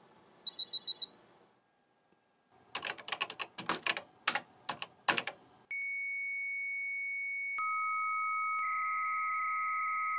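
A quick run of short high beeps, then a few seconds of rapid typing on a computer keyboard. Then comes a 300-baud modem handshake: one steady high whistle, joined partway through by a second, lower steady tone, turning into a hissing data carrier near the end.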